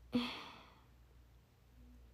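A young woman's short sigh: a brief voiced start trailing into a breathy exhale that fades within about half a second, then faint room tone.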